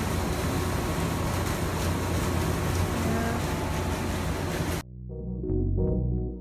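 Steady rushing outdoor noise, heaviest in the low end, as of wind on a phone microphone high above a city. About five seconds in it cuts off sharply and electronic music with a beat starts.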